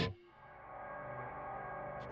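Soft background music: a sustained, ringing tone that starts quietly and slowly grows louder.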